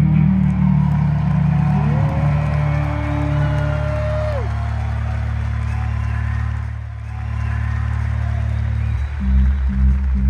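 Live rock band of electric guitar and two drum kits, amplified in an arena. A held guitar chord drones on low, with a thin high tone that slides up, holds for a couple of seconds and drops away. About nine seconds in, a pulsing heavy beat of guitar and drums starts the next song.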